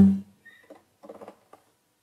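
A sudden low thump that dies away in a fraction of a second, followed by a few faint scuffs and small creaks.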